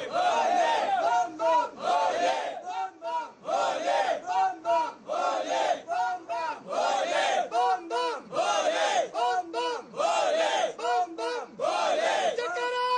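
A group of men shouting a devotional jaikara to Lord Shiva together, short loud calls repeating in a quick steady rhythm.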